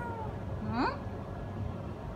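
Domestic tabby cat meowing: a drawn-out call trailing off at the start, then a short call rising in pitch just under a second in.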